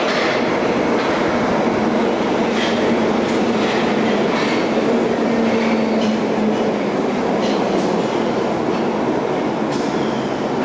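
London Underground 1972 tube stock train running into a deep-level station platform and slowing: a loud steady rumble of wheels on rail with a low steady hum that fades about six seconds in, and scattered sharp clicks from the wheels.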